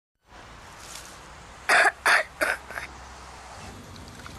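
A quick run of four short coughs about a second and a half in, the last one weaker, over a faint steady outdoor background hiss.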